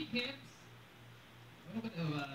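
Voices from a live comedy podcast played in the background: a short high-pitched voice sound just after the start, a lull, then talking starting again near the end. A faint steady low hum runs underneath.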